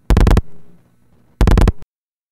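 Relays in a No. 1 Crossbar originating sender clicking in two rapid bursts, one at the start and one about a second and a half in, as the sender counts incoming dial pulses.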